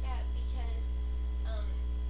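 Steady low electrical mains hum throughout, with faint, brief snatches of a woman's voice over it.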